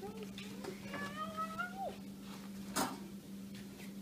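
A child's drawn-out, wordless whining cry, rising in pitch and then dropping off, followed about a second later by a sharp knock.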